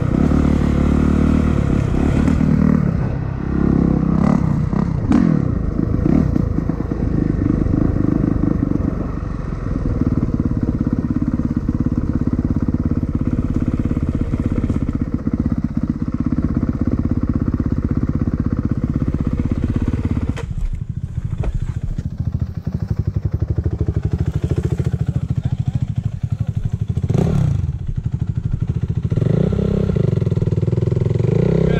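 Dirt bike engine running under the rider, revving up and down on a forest trail. It eases off about two-thirds of the way through, with a short rev near the end.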